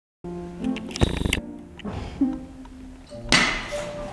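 Background music with held tones, broken by a rattling burst about a second in and a sudden loud crash a little after three seconds: a sledgehammer coming down on a block laid on a performer's body.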